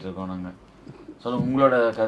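A man's voice in slow speech: a long drawn-out vowel, a short pause about half a second in, then more speech.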